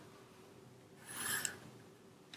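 Graphite pencil drawn along a wooden ruler's edge across paper: one short stroke about a second in, ruling a straight line.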